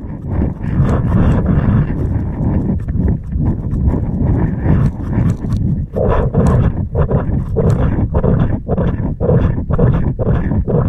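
Loud rumbling wind noise on a moving camera's microphone. From about six seconds in there is a steady rhythmic beat of roughly two thuds a second.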